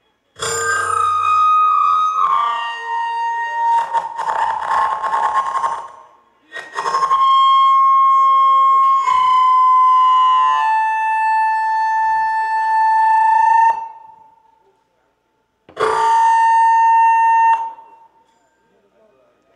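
A solo reed instrument, unaccompanied, playing long held notes in three phrases with short breaks between them; the longest phrase runs about seven seconds and ends on a long sustained note.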